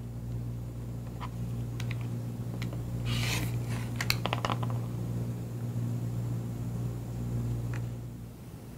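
A rotary cutter slicing through two layered fabric squares along an acrylic ruler: one short scraping stroke about three seconds in, with light clicks and taps of the cutter and ruler on the cutting mat. A steady low hum sits underneath.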